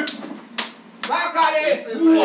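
Two sharp hand slaps about half a second apart, from a slap-handshake greeting, followed by a voice.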